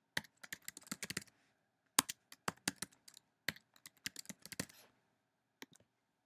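Typing on a computer keyboard: quick runs of key clicks with a short pause between them, as a username and password are entered. A couple of separate clicks follow near the end.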